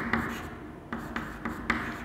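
Chalk writing on a blackboard: a series of short scratching strokes, each starting with a light tap, several in two seconds.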